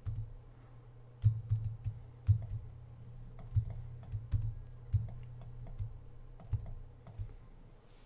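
Computer keyboard keys pressed in an irregular series, about a dozen clicks each with a low thud, the loudest a little over a second and about two seconds in. A faint steady low hum runs underneath.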